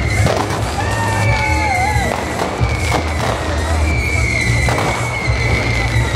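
Fireworks bursting overhead, a string of sharp bangs every half second to second, over loud music with a heavy bass.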